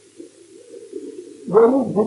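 A man's voice speaking Urdu resumes about one and a half seconds in, after a short pause that holds only a faint, low murmur.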